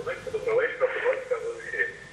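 Indistinct speech from a caller coming in over a telephone line, thin and narrow in tone.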